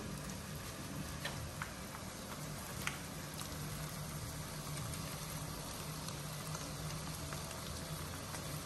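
Mixed vegetables, mince and egg cooking in oil in a pot on the stove: a steady, even sizzle with a low hum beneath it and a few faint ticks.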